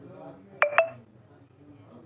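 Samsung Galaxy M30 smartphone speaker giving two short, sharp touch-feedback ticks about a fifth of a second apart as a settings menu item is tapped.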